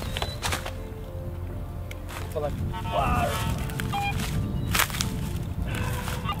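Steady low wind rumble on the microphone, with a few faint short electronic beeps from a metal detector checking the signal of a find, and a couple of sharp clicks from handling.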